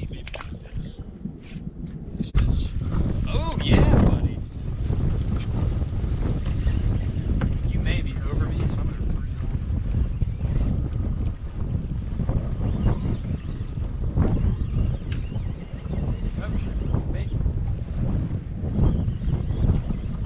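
Wind buffeting the camera microphone, a steady low rumble that gets louder a couple of seconds in, with a brief voice about four seconds in.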